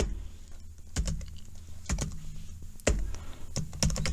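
Computer keyboard being typed on: a few irregular key clicks over a low steady hum.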